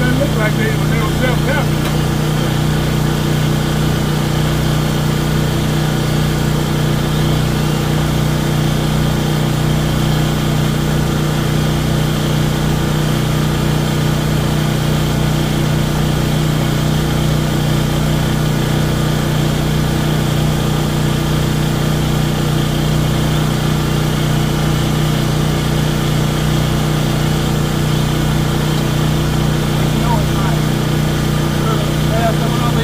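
Large portable generator engine, a 14,500-watt Westinghouse, running steadily at a constant pitch with an even hum.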